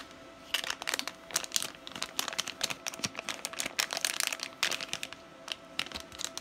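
Metallised anti-static bag crinkling and crackling in a rapid, uneven run of small crackles as it is opened and handled to take out the Raspberry Pi PoE HAT board.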